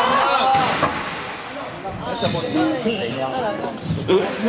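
Squash court in play: thuds of the ball and players' footsteps on the wooden floor, with people talking nearby through most of it.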